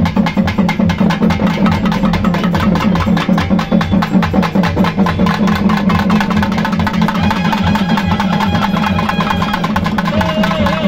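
Folk drum ensemble of double-headed drums beaten with sticks, playing a fast, driving, even rhythm to accompany the dance. A thin high steady tone joins about seven seconds in.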